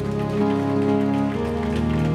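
Background music of sustained held chords under the sermon, the chord changing about one and a half seconds in.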